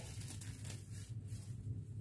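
Quiet room with a faint, steady low hum and no distinct events.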